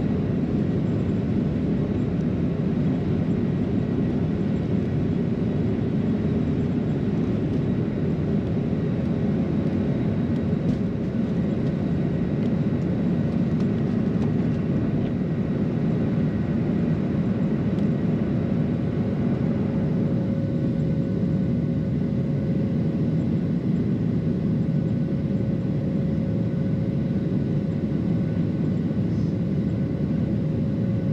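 Cabin noise of a Boeing 737-800 heard from a window seat over the wing during take-off and initial climb: the steady roar of the engines and rushing air. A steady hum grows stronger about two-thirds of the way in.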